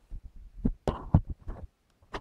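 Handling noise: fingers bumping and rubbing against the camera as it is set up, a string of irregular knocks and thumps that stop shortly before the end.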